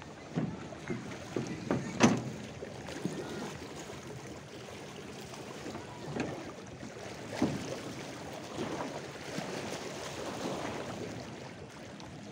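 Small lake waves lapping and splashing against the shore in irregular slaps, the loudest about two seconds in, over a steady background hiss.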